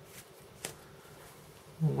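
Quiet room tone with a few faint light clicks, one a little clearer about two thirds of a second in, then a man's voice starts near the end.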